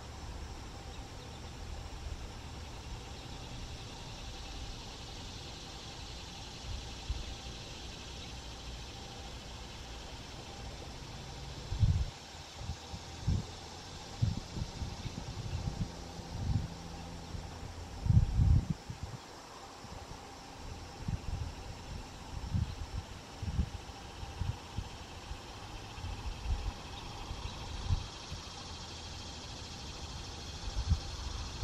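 Steady low outdoor rumble under a faint high hiss. From about twelve seconds in come irregular dull low thumps on the camera's microphone, the loudest around eighteen seconds.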